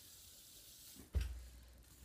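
Near silence in a small room, broken about a second in by one short thump with a low rumble that dies away, from the fidget spinner being handled and moved.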